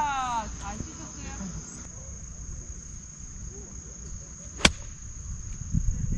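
Insects chirring steadily in a constant high tone, with a single sharp click about three-quarters of the way through.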